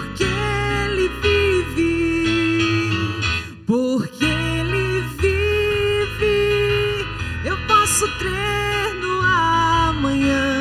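A woman singing a Portuguese-language Christian worship song into a microphone over digital piano accompaniment, holding long notes with a brief pause about three and a half seconds in.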